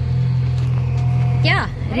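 Steady low engine drone of heavy digging machinery working in the street, running continuously as loud background noise.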